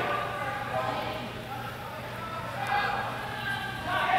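Indistinct background voices in a large hall, with faint footfalls on artificial turf as two longsword fencers close in. No blade clash stands out.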